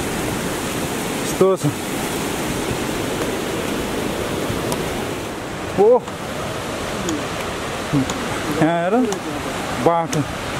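Steady rushing of a swollen mountain stream in spate, with a few short voice calls over it.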